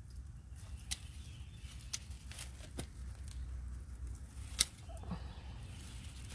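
Hand pruning shears snipping through plant stems, about five sharp clicks at irregular intervals, the loudest a little past four and a half seconds in, as a floppy perennial is cut back hard.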